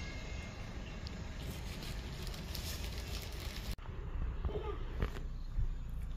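Outdoor background noise with a steady low rumble, broken by a sudden brief dropout about four seconds in and a sharp click about a second later.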